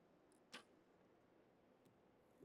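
Near silence with one brief sharp click about half a second in and a much fainter tick near the end.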